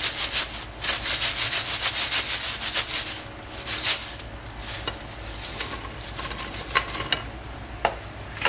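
French fries shaken and scraping against a paper-lined stainless steel mesh strainer: a fast, dense scraping rattle for about three seconds, then thinning to scattered scrapes and clicks as they are tipped out.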